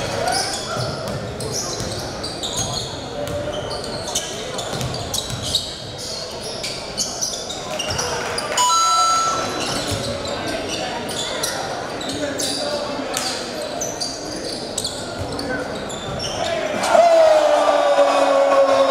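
Live court sound of a basketball game in an echoing gym: the ball bouncing on the hardwood, short squeaks of sneakers on the floor, and the chatter of voices from the crowd and players.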